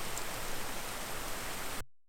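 A creek running, a steady rush of water, cut off abruptly near the end.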